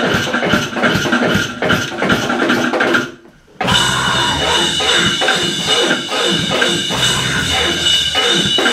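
Loud live cybergrind/noisecore music: a drum kit pounding out fast, steady hits over a dense electronic wall of sound. About three seconds in it cuts out abruptly for half a second, then crashes back in with a high steady tone riding on top.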